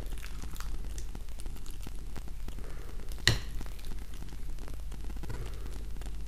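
Metal teaspoon scooping a sticky mixture of banana pieces and hazelnut tahini from a plate into small glass cups: soft scraping and squishing with small clicks, and one sharp clink about three seconds in.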